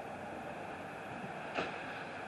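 Steady outdoor background noise with no clear tone, broken by one sharp click about one and a half seconds in.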